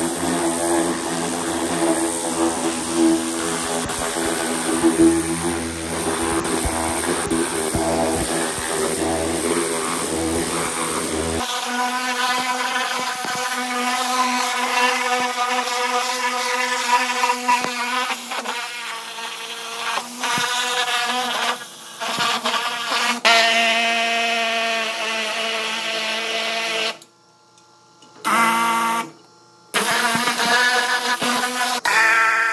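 Pressure washer running, its wand spraying a jet of water onto a bare cast-iron Chrysler 340 engine block to rinse off the alkaline degreaser, over a steady pump hum. The low rumble drops away abruptly about a third of the way in, and the sound cuts out briefly twice near the end.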